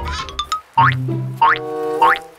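Playful children's background music with cartoon 'boing' sound effects: three quick upward-sliding tones, about two-thirds of a second apart, over held musical notes.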